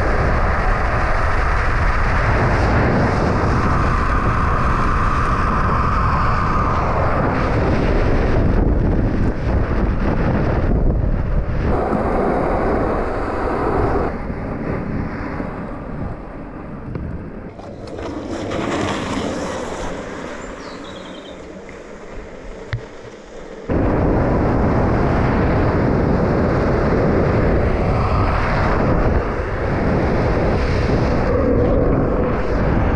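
Wind rushing over the camera microphone together with longboard wheels rolling fast on asphalt during a downhill run. The noise changes abruptly several times and drops quieter from about halfway in, coming back loud shortly after.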